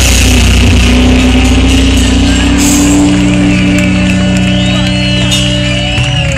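Live band through a loud outdoor PA, holding long sustained notes as a song winds to its close. Near the end the level eases off, and whoops and cheers from the crowd begin over it.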